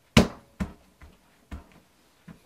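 A hand patting down on a leather patch lying on a plastic cutting mat. There are four quick knocks about half a second apart; the first is loudest and the rest grow fainter.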